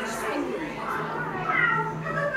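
Indistinct voices, one of them high-pitched, with a steady low hum coming in about halfway through.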